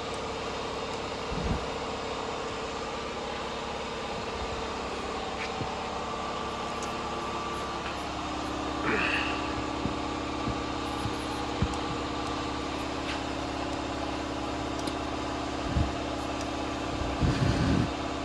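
A vehicle engine idling with a steady hum, its tone shifting about eight seconds in, with a few faint clicks over it.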